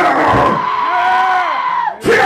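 A metal vocalist's long held scream through the PA, rising and then falling in pitch, with the band's drums dropped out; it cuts off just before the end.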